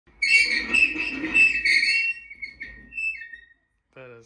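A loud, high whistling sound with a rough noisy layer beneath, pulsing a few times over about two seconds, then trailing off in fainter high notes and stopping about three and a half seconds in.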